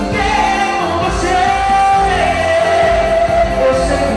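Live band music with a male singer singing into a microphone, holding long notes over the band.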